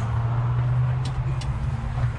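A steady low mechanical hum with a rumble beneath it, with two faint clicks a little after a second in.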